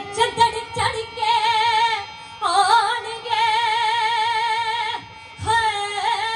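A woman singing a Punjabi folk song (lok geet) solo, holding long notes with a wide, even vibrato after quick ornamented notes at the start, pausing briefly about five seconds in before the next phrase. A steady harmonium drone sounds underneath.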